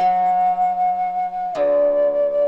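Interlude music led by a flute: one long held note that slides down to a lower held note about one and a half seconds in, over a low sustained accompanying tone.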